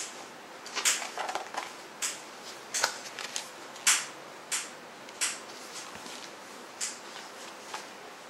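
Pages of a large photo book being turned and handled: a series of short, crisp rustles and flaps, roughly one a second.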